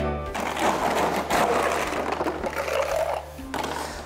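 Ice being scooped into a metal cocktail shaker tin from the bar's ice well: a rough, rattling noise lasting about three seconds, under background music.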